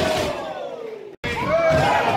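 Small live crowd of wrestling fans shouting and cheering, many voices overlapping. The sound drops out sharply for an instant a little over a second in, then the shouting carries on.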